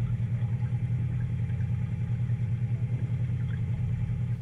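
An engine idling steadily with a low, even throb that pulses several times a second.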